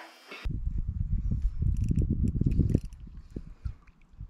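Wind buffeting a kayak-mounted action camera's microphone: an uneven low rumble that gusts and eases off about three seconds in, with faint light clicks above it. It is preceded in the first half second by the fading end of an electric guitar note.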